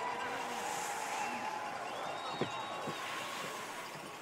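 Finish-area ambience of a ski race: a steady outdoor hiss with faint distant voices, slowly fading out.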